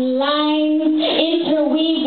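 A woman singing solo into a microphone, holding long notes that waver and bend slightly in pitch.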